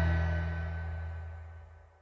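The song's last chord on acoustic guitar, left ringing and dying away steadily to silence just before the end.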